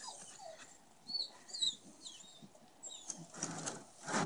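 Faint bird chirps: a few short, high calls about a second in and again near the end. A faint falling whine comes at the very start, and a soft scuffle just before the end.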